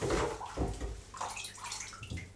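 Water sloshing and splashing in a sauna bucket as a wooden ladle scoops it up, in a few uneven splashes.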